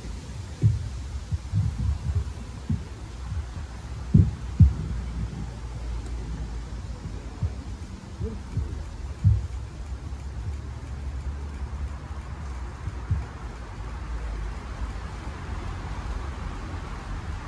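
Dull low thumps at irregular intervals, the two strongest a little after four seconds in, over a steady low rumble.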